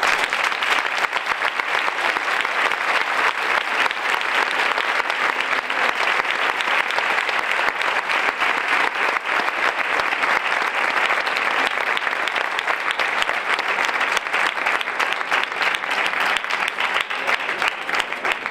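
Large audience applauding in a long, steady round of clapping.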